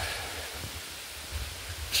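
Steady soft rustling hiss with a few faint low thumps near the middle: a walker's footsteps and movement on a wooded trail.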